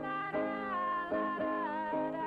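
A woman singing a long held, slightly wavering note over piano chords that are struck again several times.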